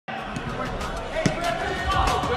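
Players' voices and several sharp thuds of a ball being kicked and bouncing on the turf of an indoor soccer arena.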